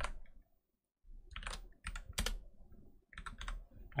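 Typing on a computer keyboard: a run of quick key clicks starting about a second in, with a short pause near three seconds.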